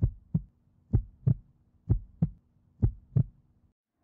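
Heartbeat sound effect: four slow, regular lub-dub pairs of low thumps, about one pair a second, over a faint steady hum, stopping shortly before the end.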